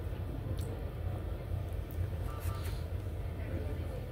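Steady low machine hum of hospital room equipment, with a short faint beep a little over two seconds in.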